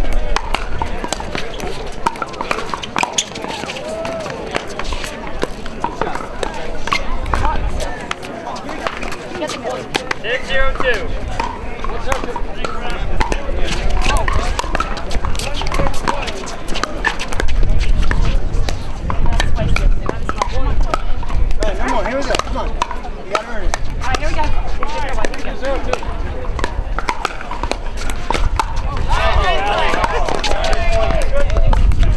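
Pickleball rally: paddles striking a hard plastic ball in repeated sharp pocks, over chatter from spectators and neighbouring courts, with bursts of low wind rumble on the microphone.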